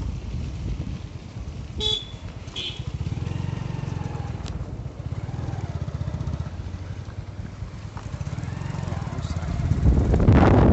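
Motorcycle engine running steadily while riding on a rough dirt road. A horn gives two short beeps about two seconds in.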